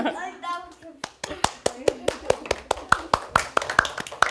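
A laugh, then a small group clapping by hand, the claps separate and uneven rather than a dense roar of applause.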